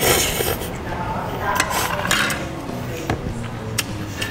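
Mie pangsit noodles slurped up from chopsticks, a loud hissing slurp at the start and a couple more shortly after, with chewing in between. A few light clicks of metal chopsticks and spoon against the bowl near the end.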